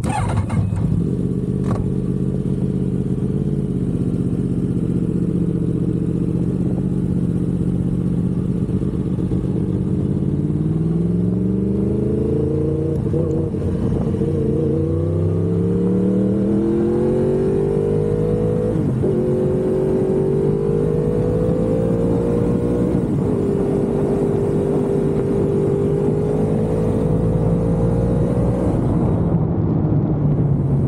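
2015 Yamaha R1's crossplane inline-four engine, heard from a camera on the bike: steady at low revs for about ten seconds, then rising in pitch through several upshifts as the bike accelerates, and holding a steady pitch at cruising speed near the end.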